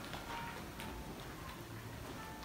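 Faint, irregular light clicks and ticks over a low room hum.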